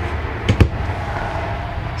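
A quick sharp knock from a hand handling a thin particle-board cabinet door, about half a second in, over a steady low background rumble.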